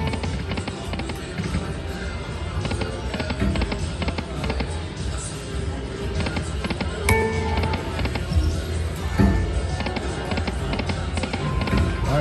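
Video slot machine playing its electronic music and reel-spin sounds through several spins in a row, over casino background noise, with short chime-like tones at the start and about seven seconds in.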